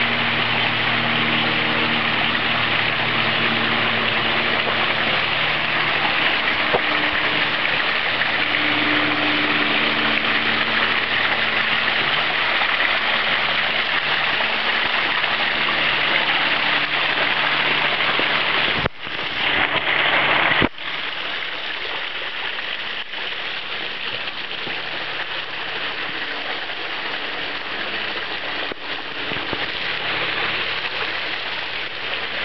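Storm runoff pouring out of a cave mouth and splashing down stepped rock ledges, a steady rush of falling water swollen by heavy rain. It breaks off abruptly about two-thirds of the way through, then resumes slightly softer. A faint low drone sits under the water in the first half.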